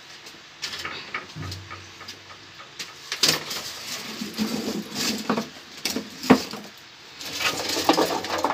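Dry firewood sticks being handled and stacked: irregular wooden knocks and clicks as pieces strike each other, with short scraping rustles. The sharpest knock comes about six seconds in.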